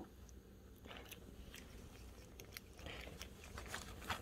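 Faint, scattered crunching clicks of a chipmunk biting at an in-shell peanut.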